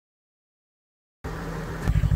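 Complete silence for about the first second, then a snowmobile engine's low, steady running starts abruptly.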